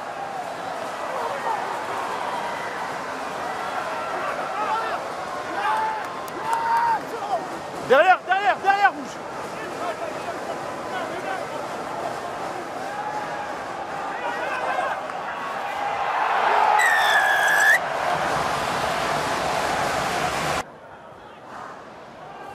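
Rugby stadium crowd noise with players' shouts, including a loud call of "derrière" about eight seconds in. Later the crowd swells into cheering and a referee's whistle blows once for about a second, as a try is scored.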